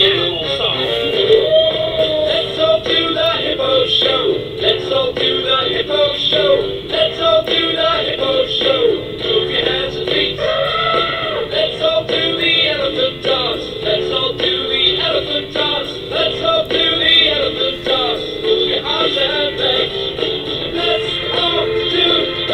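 A children's English song about animals, with singing over a continuous backing track. It sounds muffled, with no high treble.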